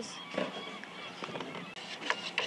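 Low, steady background noise with a brief faint voice about half a second in.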